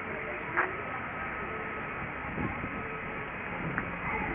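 Steady outdoor background noise, an even hiss with a faint high steady tone running through it. There is no distinct event.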